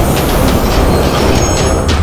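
Loud, dense rumbling sound effect under dramatic action background music, from a cartoon action scene.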